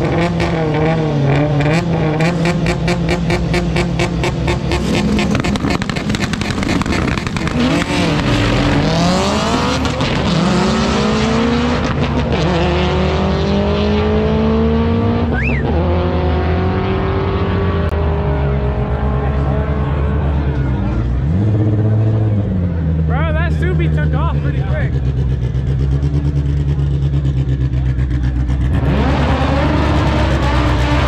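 Drag cars at the start line of a drag strip, engines revving with a rapid run of pops, then launching and accelerating away, the engine pitch rising and dropping with each gear change as they fade down the track. Near the end another car's engine revs up close.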